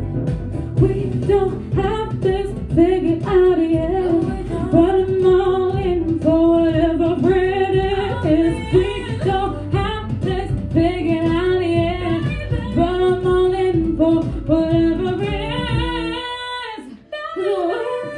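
A woman singing a pop song into a handheld microphone over recorded backing music with bass and a beat, holding notes with vibrato. About a second before the end, the backing drops out and the voice pauses briefly before both come back in.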